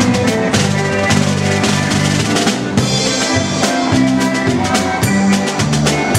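Live polka band playing an instrumental passage: bass guitar, a drum kit with cymbals and a concertina over a steady polka beat.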